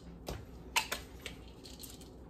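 A few light clicks and taps of small hard objects being handled and set down on a kitchen counter, the sharpest a little under a second in.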